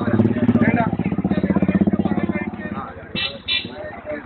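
A motor vehicle's engine passing close, a low rapid pulsing that swells and fades over the first two seconds or so, followed near the end by two short toots of a vehicle horn.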